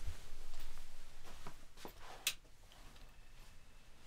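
Quiet room with faint rustling and a few light clicks, one sharper than the rest about two seconds in, as a person moves about at a desk; the sounds fade to near quiet.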